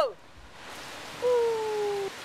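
Large fountain jet shooting a column of water upward: a steady rushing hiss that builds about half a second in. Partway through, a loud held tone slides slightly down in pitch and cuts off at the end.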